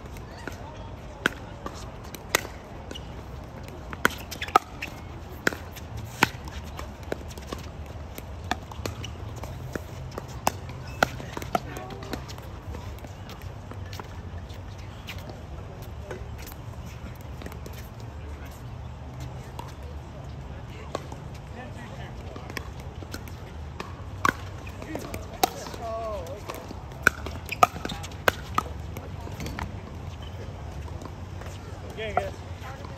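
Sharp pops of pickleball paddles striking a plastic pickleball in rallies, scattered through the first dozen seconds and again in a quick run near the end, over a low steady hum and faint voices.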